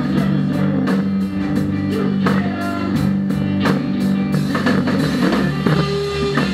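Live rock band playing guitars over a drum kit, with a steady beat of drum and cymbal hits.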